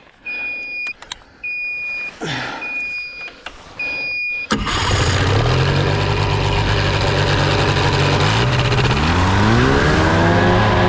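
Short electronic beeps about once a second, then a paratrike's engine starts suddenly about four and a half seconds in and runs at idle. Its pitch rises near the end as it is revved up.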